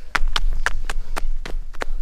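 Footfalls of runners in thin running sandals on a dirt trail, a quick, even patter of sharp slaps several times a second over a low rumble.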